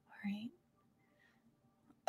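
Near silence, broken about a quarter second in by a woman's brief, quiet wordless vocal sound with a rising pitch.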